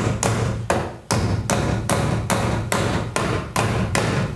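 Claw hammer driving the nails of a plastic nail-on electrical box into a wooden stud: a steady run of quick blows, about three a second, with a short pause about a second in.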